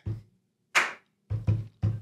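A person beatboxing a simple beat with the mouth: low kick-drum thuds alternating with sharp, hissing snare sounds.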